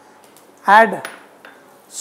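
Faint clinks of a glass bowl against an iron kadai as chopped onion is tipped into the oil, under one short spoken word.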